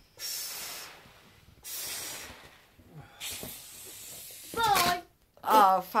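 A child blowing into a balloon: three long hissing breaths with short pauses between. Near the end, a loud voice breaks in.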